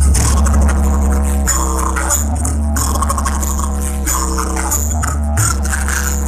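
Music played loudly through a subwoofer driven by a newly built 5.1-channel MOSFET amplifier under test, with heavy, continuous bass under the percussion.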